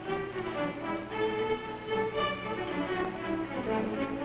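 Orchestral background music led by strings, with sustained notes that change pitch every half second or so.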